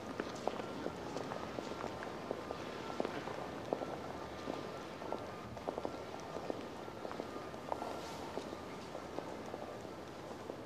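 Hard-soled footsteps on cobblestone paving, irregular clicks and knocks from several people walking, over a steady open-air murmur.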